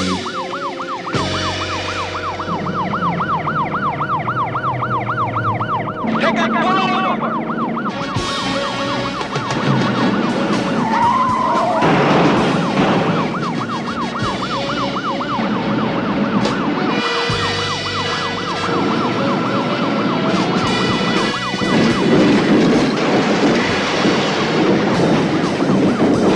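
Police patrol car's electronic siren on yelp: a fast wail rising and falling about three times a second, over engine and road noise. It stops near the end, where a louder rushing noise takes over.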